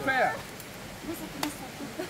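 A voice trailing off, then a quiet lull with faint murmured voices and one sharp click about one and a half seconds in.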